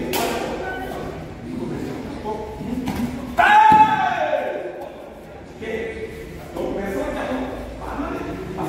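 A man's loud, sharp karate shout (kiai), falling in pitch, about three and a half seconds in, over murmured talk from a group; a single thud near the start.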